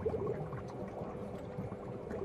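Aquarium water bubbling, with a run of small bubble blips as air rises through the tank.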